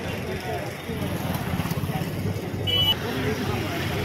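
Men's voices talking in a street, over a low rumble of passing traffic, with a motorcycle going by close near the end. A brief high tone sounds a little under three seconds in.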